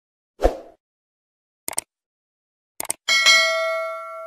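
End-screen subscribe-button sound effects: a short whoosh, two brief clicks, then a bright bell ding that rings on and fades.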